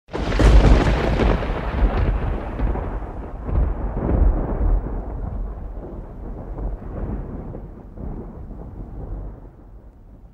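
A thunder-like boom sound effect: a sudden deep boom at the start, then a rumble with a few smaller surges that slowly dies away over about ten seconds.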